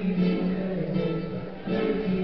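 Live guitar music: a solo guitarist strumming and plucking over his own guitar lines repeating on a loop pedal.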